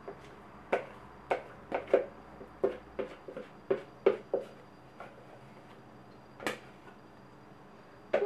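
A spoon knocking and scraping against a plastic jug as thick rye dough is scraped out into a baking tin: a string of irregular light knocks through the first four seconds, then one more a couple of seconds later.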